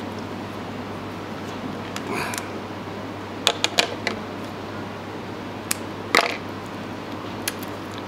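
Small clicks and taps of fishing tackle and hand tools being handled on a worktable: a quick cluster of clicks about halfway through and a couple of single ones later, over a steady background hum.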